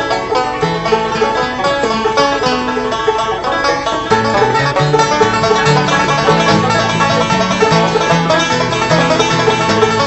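Bluegrass banjo picking: a quick run of bright plucked notes, with lower notes joining in about four seconds in.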